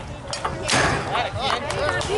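A single sharp knock of a baseball pitch meeting the plate about two-thirds of a second in, with a short tail, followed by spectators' and players' voices.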